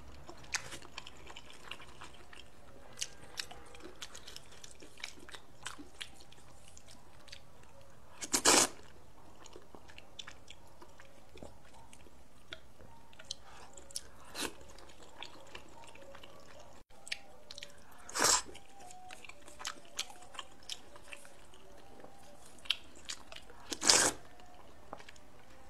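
Close-miked eating of noodle soup: three loud half-second slurps of thin noodles, spread through, the last at the very end, with soft chewing and small clicks in between.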